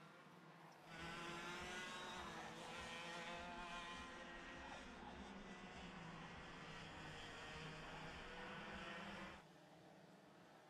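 Several IAME X30 125 cc two-stroke kart engines racing, a high buzzing whine of overlapping pitches that waver as the karts brake and accelerate. It comes in suddenly about a second in and cuts off just before the end.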